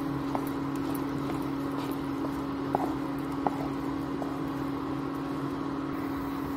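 A wooden spatula stirring a thick, pasty besan mixture in a non-stick kadhai, with faint scraping and a few light knocks against the pan. Under it runs a steady low electrical hum.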